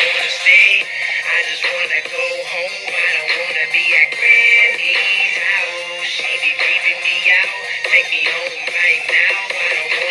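A song: a high-pitched singing voice over a backing track.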